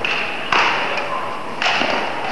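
Badminton rackets striking a shuttlecock: three sharp hits, the first right at the start, then about half a second and about a second and a half in, each echoing in a large hall.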